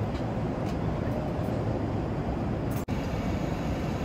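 Steady low rumble of an airliner cabin in flight, the engine and airflow noise heard from the seat. It cuts out for an instant nearly three seconds in.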